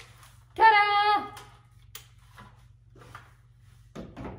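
A woman's voice giving one short, high, held vocal note for about half a second, about half a second in, with no words. Otherwise there are only a few faint clicks over a low steady hum.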